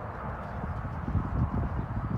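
Hoofbeats of a cantering horse on sand arena footing, dull low thuds that grow louder about a second in.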